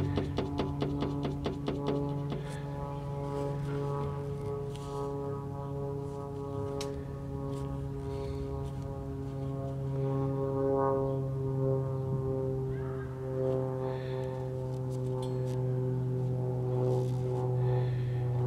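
Steady electrical hum with a stack of overtones from a CRT tester's power transformer while its voltage control is being adjusted on a picture tube under test. A rapid ticking runs through the first two seconds.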